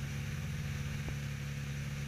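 Cessna 172 Skyhawk's piston engine and propeller running steadily in level flight, a low, even drone.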